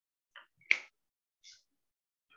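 A single sharp click about two-thirds of a second in, with a couple of fainter short scrapes or rustles just before and after it.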